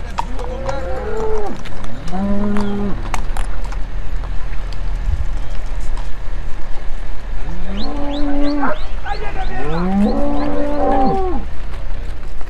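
Cattle mooing: four long, drawn-out moos, two in the first three seconds and two close together near the end, over a steady low rumble.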